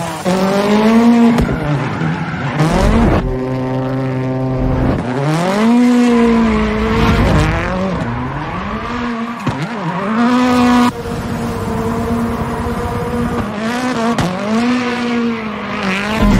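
A 650 hp Ford Fiesta rallycross car's turbocharged four-cylinder engine revs up and down over and over as the car drifts, holding steady revs for a couple of seconds early on. Tyres squeal at times between the revs.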